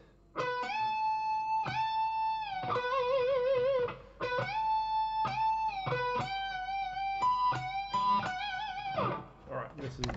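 Electric guitar, a Telecaster-style solid body, playing a lead lick in two phrases with pitch bends and a held note with vibrato.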